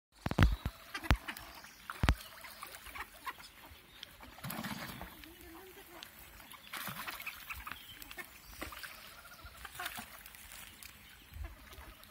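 Ducks calling as they gather for food, with several sharp clicks and knocks, loudest in the first two seconds.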